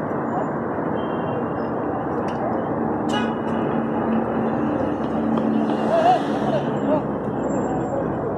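Steady city street noise of traffic, with faint, indistinct voices mixed in.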